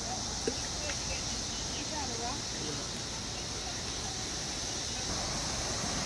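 Chorus of 17-year periodical cicadas (Brood X): a loud, steady, high-pitched buzz from countless insects together, unbroken throughout.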